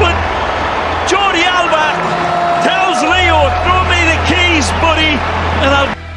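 Excited voice calling out at a high pitch over steady stadium crowd noise and a low hum, cut off suddenly near the end.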